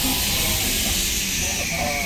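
Steady hiss and low rumble of outdoor background noise, with faint voices near the end.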